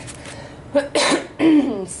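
A person coughing, a short fit of coughs starting about three-quarters of a second in, which she puts down to her allergies flaring up.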